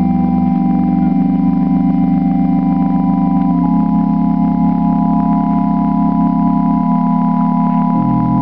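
Organ playing slow, sustained chords, the held notes shifting to new chords every second or few, as a closing voluntary after the benediction.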